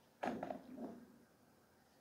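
Pool balls on a billiards table: one sharp knock about a quarter second in, with a short trailing rattle as the balls run after the shot.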